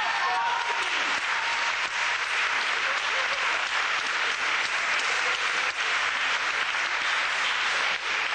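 Concert audience applauding steadily, with a few voices calling out in the first second.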